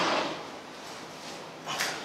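Scuffling of two people grappling: a short noisy rustle right at the start and another brief one near the end, clothing and shoes moving against each other and the floor mat.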